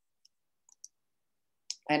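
A few faint, short clicks in near silence, with a sharper click just before a woman's voice resumes near the end.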